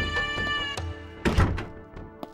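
Dramatic background score: a held synth chord that cuts off just under a second in, then a single loud thud about halfway through.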